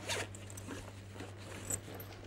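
Faint, short scraping and rustling handling sounds, loudest just after the start, over a steady low electrical hum.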